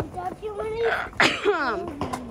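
A young child's high-pitched voice calling out without words, with a short sharp breathy burst just after the middle and a falling call near the end.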